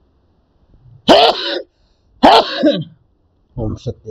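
A man coughing and clearing his throat: two harsh coughs about a second apart, then shorter throat-clearing sounds near the end.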